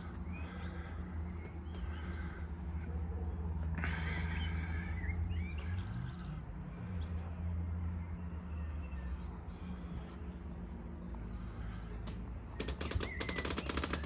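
Birds chirping over a steady low hum, which dips briefly in pitch midway. There is a short rush of noise about four seconds in and a run of rapid clicks near the end.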